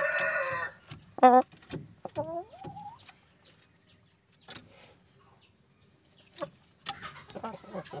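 A rooster's crow ending under a second in, followed by a short loud squawk about a second in and a couple of rising calls around two seconds; after a quiet spell, chickens cluck in a quick run of short notes near the end.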